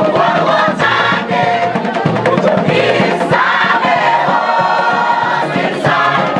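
A community choir, many voices singing a song together, over a bamboo band's steady beat of struck bamboo tubes.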